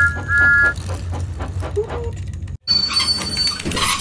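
Motorized toy Thomas the Tank Engine running along plastic track: a steady motor hum with an even clicking of about four to five clicks a second. A two-note train whistle toots twice at the start. The running sound cuts off about two and a half seconds in.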